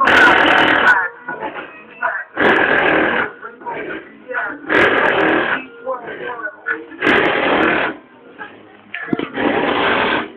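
Bass-heavy music with vocals played loudly through a 15-inch Resonant Engineering SE subwoofer in a Mazda B2200 pickup, recorded on a cell phone that muffles and distorts it. Loud bass surges come about every two and a quarter seconds.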